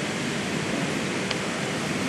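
Steady hiss of background room noise in a large hall, with a faint tick a little past halfway.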